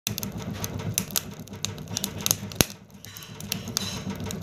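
Firewood crackling in the firebox of a kuzine wood-burning cook stove: irregular sharp pops and snaps over a low steady rumble from the fire. The loudest pop comes about two and a half seconds in.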